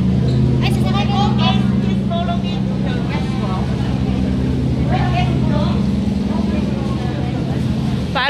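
Boat engine running steadily with a low, even drone, with people's voices over it.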